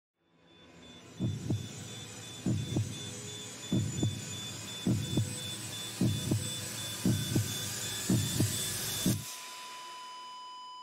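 Heartbeat sound effect in a title sting: about eight double thumps, roughly one a second, over a hiss that swells louder. The hiss and beats cut off suddenly near the end, leaving a held ringing tone.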